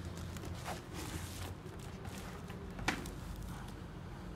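Handling noise from a NASA NS 901 motorcycle helmet being turned over and handled: scattered light clicks and taps from the shell, liner and chin-strap buckle, with one sharper click about three seconds in.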